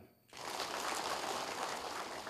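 A large audience applauding: many hands clapping in a dense, steady patter that breaks out a moment after the start.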